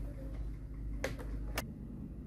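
Two light clicks about half a second apart, a second in, as the plastic case of an all-in-one computer is set down on a glass counter, over a steady low room hum.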